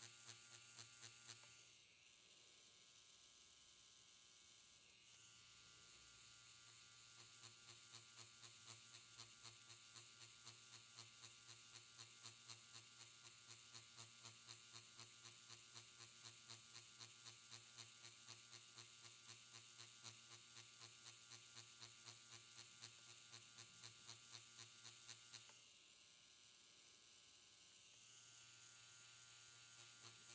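Faint steady buzz of a Quantum One permanent-makeup machine running with a single-prong needle cartridge as it shades pigment into latex practice skin, pulsing lightly about two to three times a second. The buzz eases and softens twice, shortly after the start and about four seconds before the end.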